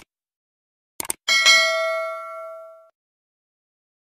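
Subscribe-button animation sound effect. A mouse click comes right at the start and a quick double click about a second in. Then a single bright bell ding rings out and fades over about a second and a half.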